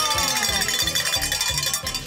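A cowbell rung rapidly and continuously, a fast run of metallic clanks with a ringing tone, after a shout trails off at the start.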